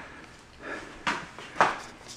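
Handling noise from a hand-held camera being moved about: faint rustling, then two sharp knocks about half a second apart.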